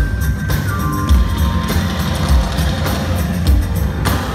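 A live band with a line of portable drums plays a heavy, steady drum beat, with a high held note that steps down in pitch about half a second in.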